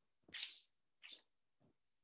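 Chalk writing on a blackboard: a few short scratching strokes, the loudest about half a second in and two fainter ones after it.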